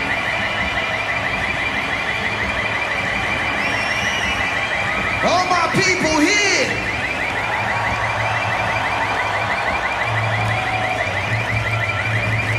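A large concert crowd cheering and shouting, with a high warbling siren-like electronic tone running through it. A low steady bass note comes in near the end.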